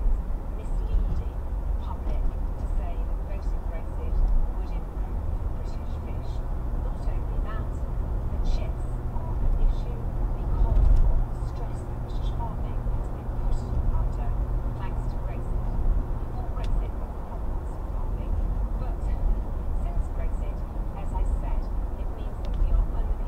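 Car road and engine noise heard inside the cabin through a dashcam's microphone while driving at steady speed: a continuous low rumble, with a low hum that comes in about five seconds in and fades out near seventeen seconds.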